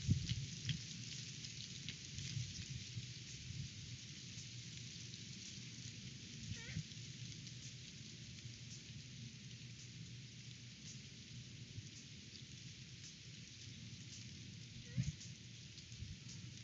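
Strong wind gusting over the microphone, a low rumble under a steady hiss of rustling leaves and branches, with louder gusts at the start and near the end. Two faint rising squawks from a great horned owl come about seven seconds in and near the end.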